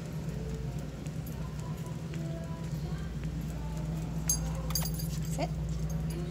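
A dog walking on a leash across a hard concrete floor, its claws ticking in a steady stepping rhythm along with its handler's footsteps, over a steady low hum.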